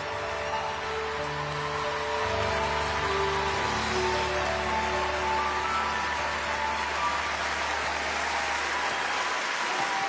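Grand piano and band holding the song's closing notes as audience applause builds up and takes over; the low held note stops near the end.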